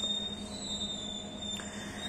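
A quiet, steady high-pitched electronic whine over a low hum.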